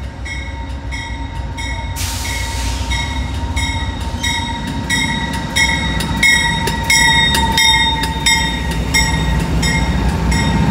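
Amtrak GE P42DC diesel locomotive drawing a passenger train into a station, its bell ringing about two to three strokes a second and louder as the locomotive passes. Underneath is a steady high brake squeal and a low diesel rumble that builds toward the end, with a short hiss of air about two seconds in.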